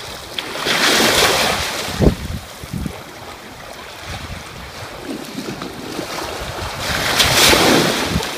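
Small sea waves washing onto a shallow sandy shore, with wind buffeting the microphone; the rush swells about a second in and again near the end, with a few low thumps in between.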